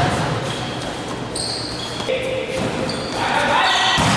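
Volleyball rally in a gym: the ball is hit sharply right at the start and again about halfway through, amid players' shouts, all echoing in the large hall.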